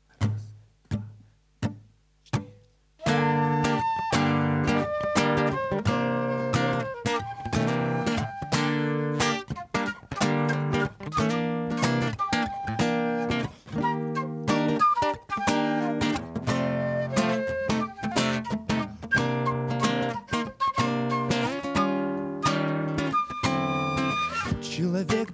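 Acoustic guitar and flute playing an instrumental introduction. It opens with four separate short strokes, then about three seconds in settles into steady rhythmic guitar strumming with the flute carrying a melody over it.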